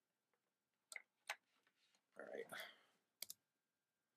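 Faint clicks and knocks of gear being handled close to the microphone while a MIDI cable is connected, with a short rustle about two seconds in.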